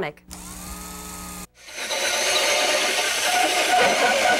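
Panasonic 15.6-volt cordless drill driving a large hole saw through plywood, starting about two seconds in: a steady, loud cutting noise with the motor's whine under it, the drill working under heavy load.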